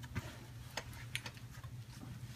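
Faint, irregular small clicks and ticks from a folding chair's mesh seat and frame being handled and positioned on a heat press platen, over a low steady hum.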